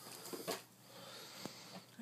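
A short, breathy, half-whispered exclamation about half a second in, then low hiss with a single soft click near the end.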